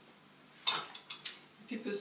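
Kitchen clatter of utensils and containers being handled: a quick run of about four sharp clicks and knocks, starting under a second in. A voice begins near the end.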